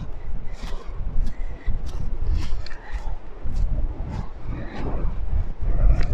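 Gusty wind buffeting the microphone with a heavy low rumble, over footsteps on a woodland floor of dry pine needles and twigs, a short tick about every half second.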